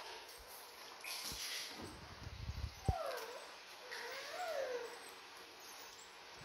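Baby macaque making two short whimpering calls about halfway through, each sliding down and up in pitch. Just before them there is cloth-and-hand rustling and a single sharp click.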